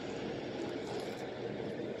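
Steady low-level room noise with a faint steady hum, no distinct events.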